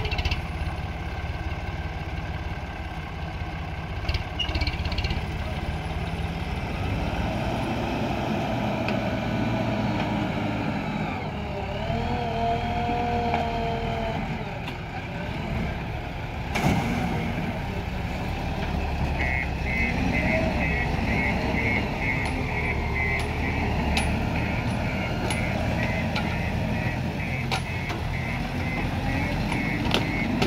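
Diesel engines of a JCB 3DX backhoe loader and a tractor running steadily, with a sharp knock a little past halfway. From about two-thirds of the way in, a rapid high electronic beeping of a vehicle's reversing alarm.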